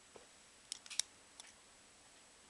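A few short, light clicks and taps from a Beyblade spinning top and its plastic packaging being handled, the loudest click about halfway through.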